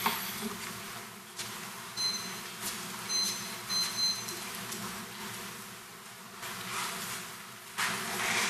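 Footsteps of a person walking away from a lectern across a carpeted meeting room, with a few light knocks over a steady low hum. Three short high beeps sound between about two and four seconds in.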